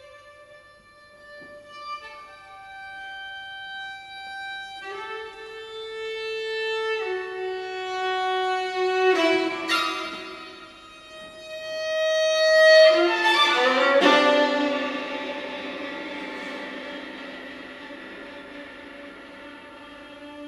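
Solo viola playing slow, held bowed notes, some sounded two at a time, growing louder to a peak about thirteen seconds in and then dying away.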